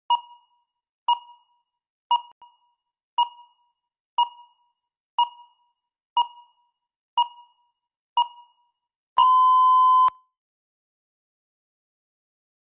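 Countdown timer beeping once a second, nine short high beeps, then one long beep of about a second marking the end of the preparation time and the start of speaking time.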